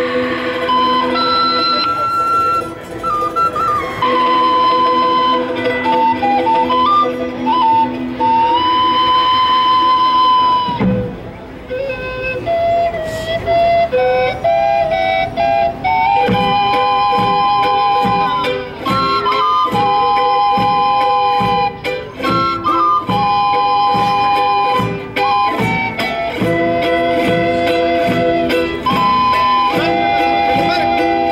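A live folk ensemble playing: several flutes carry a melody in long held notes over acoustic guitars. After a short pause about eleven seconds in, the melody resumes, and from about halfway through steady guitar strumming drives a strong even rhythm under it.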